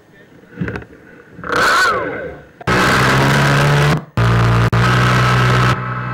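The airship's propeller motors running, heard from the onboard camera: a loud, steady rushing sound with a low hum through it. It cuts out briefly about four seconds in, comes back, and runs quieter near the end.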